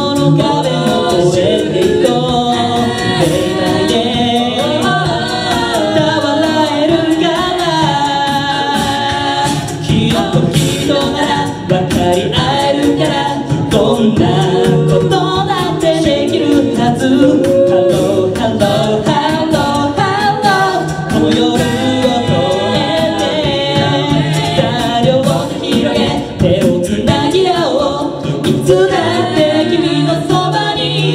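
Six-voice mixed a cappella group singing a J-pop song live through microphones, with men's and women's voices in harmony over a sung bass line.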